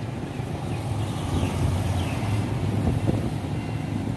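Road traffic, mostly motorbikes, running past: a steady low engine hum, with a couple of faint high squeaks about halfway through.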